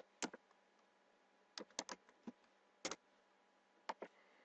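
Faint keystrokes on a computer keyboard as a word is typed: about eight short, separate clicks, unevenly spaced with a gap of over a second near the middle.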